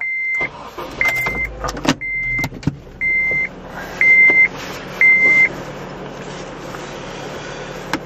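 A car's electronic warning chime beeping six times, one beep a second at the same high pitch, with a few knocks and clicks alongside the first beeps. After the chime stops, a steady low hum continues.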